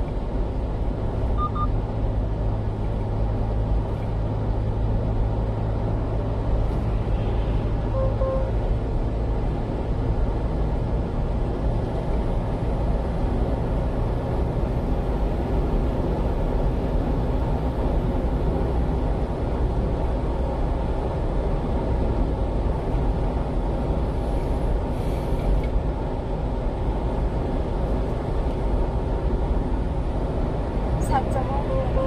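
Steady drone of engine and tyre noise from a one-ton refrigerated box truck cruising on an expressway at about 70–75 km/h.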